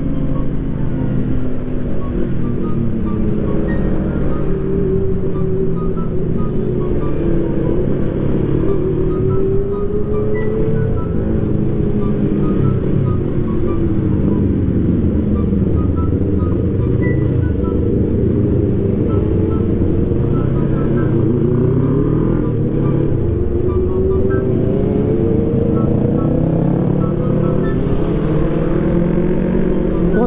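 Background music over a sport motorcycle's engine, whose pitch rises and falls repeatedly as it accelerates and eases off, under a steady low rumble.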